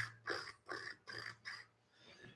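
Four soft, evenly spaced clicks, about two or three a second, made by a man imitating long fingernails tapping on a table.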